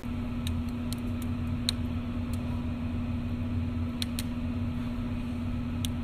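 Steady mechanical hum with one held low tone and a low rumble under it, with a few faint ticks scattered through it.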